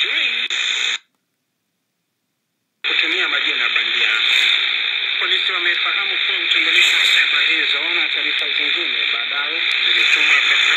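Shortwave broadcast speech with static hiss from the small speaker of an Eton Elite Mini radio, sounding thin and narrow. About a second in the sound cuts out completely for about two seconds as the radio scans. A different station's voice with hiss then comes in and plays on.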